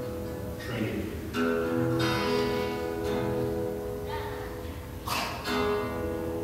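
Acoustic guitar being strummed and picked: chords ring on, with fresh strums about a second and a half in, about two seconds in, and twice more near the end.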